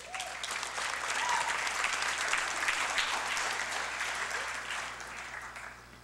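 Audience applauding: dense clapping that starts at once and tapers off near the end.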